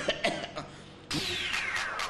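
Two short coughs, then about a second in a loud whoosh with a falling whistle sliding steadily down in pitch, a comedy transition sound effect.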